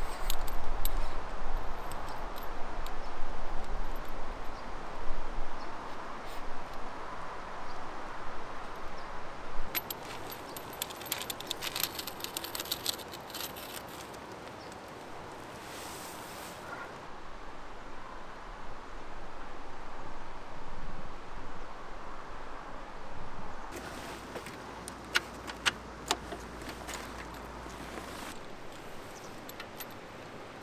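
Metal clinks and rattles from a lightweight Trail Jack motorcycle stand being handled and set against a motorcycle's rear swingarm, with runs of sharp clicks about ten seconds in and again later.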